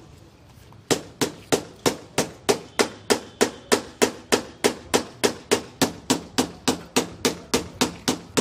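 Hammer tapping steadily on the side of steel column formwork filled with fresh concrete, about three blows a second from about a second in, each with a short metallic ring. The tapping compacts the concrete in place of a vibrator.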